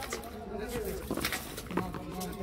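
A frontón ball in play: several sharp knocks as the ball strikes the wall and the players' hands, spread unevenly across two seconds.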